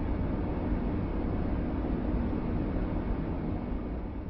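Low, steady rumbling noise with no melody or beat, left once the song has ended, fading gradually toward the end.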